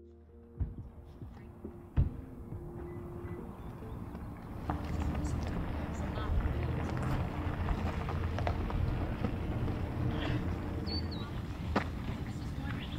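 Outdoor ambience: wind on the microphone as a steady low rumble, with faint distant voices and scattered small clicks, and a brief high chirp near the end. Soft music fades out in the first few seconds.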